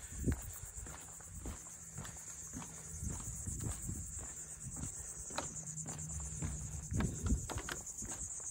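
Footsteps on a wooden plank boardwalk, an uneven run of dull knocks, over a steady high-pitched buzz of insects in the marsh.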